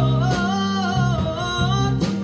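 Female jazz vocalist singing held, wavering notes over a live jazz band, with bass notes and drums underneath.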